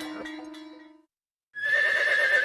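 Plucked-string music fades out about a second in; after half a second of silence, a loud, wavering, high-pitched animal call begins near the end.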